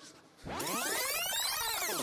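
Edited-in electronic sweep sound effect: a dense, many-toned sound that rises in pitch and then falls again over about a second and a half, cutting off abruptly.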